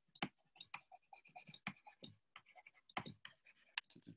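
Faint scratching and tapping of a stylus writing by hand on a tablet screen: a run of short strokes, with sharper taps just after the start and about three seconds in.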